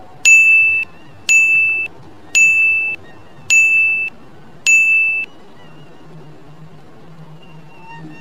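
Countdown timer sound effect: five electronic dings about a second apart, each a steady high tone held for about half a second and cut off sharply, one for each count from five down to one.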